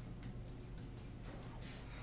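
Stylus on an interactive whiteboard while handwriting: a few light clicks and short scratchy strokes, the longest near the end, over a steady low room hum.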